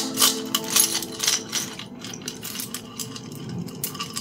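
A handful of small bones, stones, shells and coral rattling and clicking together as they are shaken inside a cupped abalone shell. The rattle is dense for about the first two seconds, then thins to scattered clicks.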